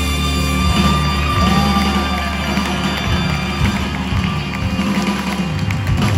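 A live band playing amplified music through a theatre PA, heard from the audience, with a strong, steady bass.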